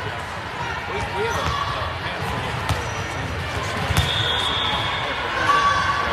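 A volleyball bouncing a few times on the hardwood gym floor, the strongest thud about four seconds in, over the echoing chatter of players and spectators in a large gym.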